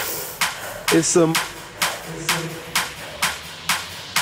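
Background music with a steady drum beat, about two beats a second, under a brief spoken word.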